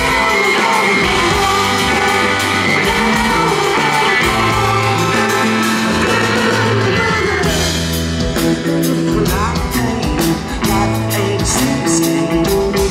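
Rock band playing live through a venue PA, recorded from the crowd: electric guitars, keyboard, bass and drums, with sung vocals over them. A falling pitch sweep comes through about seven and a half seconds in.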